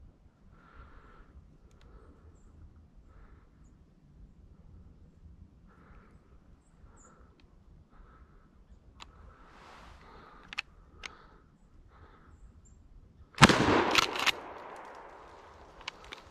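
A single 12 gauge shotgun shot, sudden and loud, about thirteen and a half seconds in, with its report echoing and dying away over a second or so.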